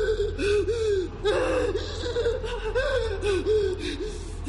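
A young woman gasping in quick, short voiced breaths, about three a second, over a steady low hum.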